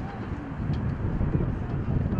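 Low, gusting rumble of wind on the microphone at an outdoor football pitch, under faint, distant calls from the players.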